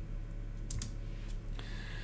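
A few light taps on a computer keyboard, over a low steady hum.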